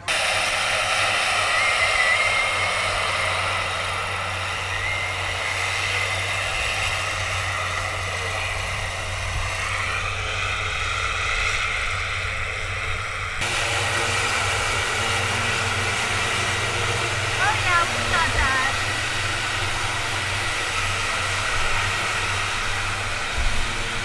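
Short Skyvan's twin turboprop engines and propellers running steadily, with a change in the sound about halfway through.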